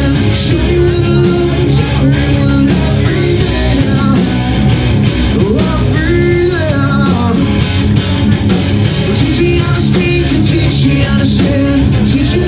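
Live rock band playing with electric guitar, bass guitar and drums keeping a steady beat, and a lead singer singing into a microphone.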